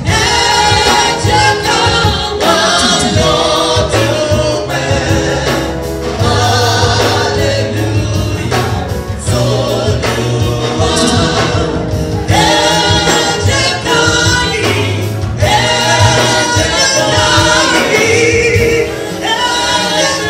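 Live gospel music: a woman sings lead into a microphone while male backing singers join in, over a band with a steady beat and bass.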